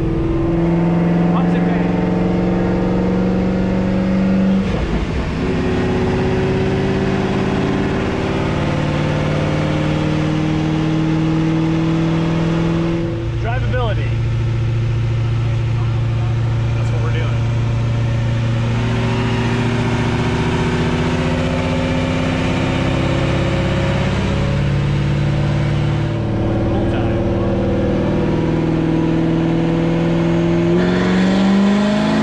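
Chevrolet C6 Corvette V8 running on a chassis dyno during tuning, held at steady engine speeds that step up and down every few seconds, with a clear drop in pitch about 13 seconds in.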